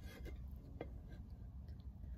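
Low, steady hum of an electric pottery wheel, with a few faint ticks and light handling sounds, one a little under a second in.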